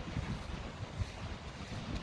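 Wind buffeting the phone's microphone: an uneven low rumble in gusts over a steady hiss.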